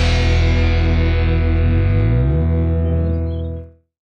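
Distorted electric guitar chord with effects left ringing out as the final chord of a grunge rock song, its high end slowly dying away. A low note slides upward a little after two seconds in, and the sound fades out quickly shortly before the end.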